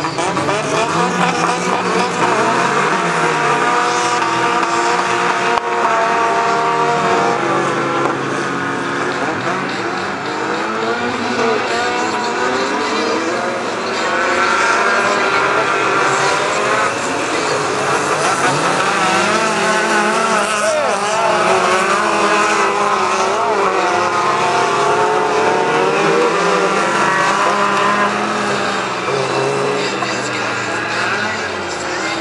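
A pack of touring cars of up to 1600 cc racing on a dirt autocross track. Several engines rev at once, their pitches rising and falling and overlapping.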